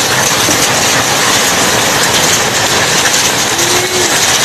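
Hail and heavy rain falling steadily, a loud, dense, even noise with no break.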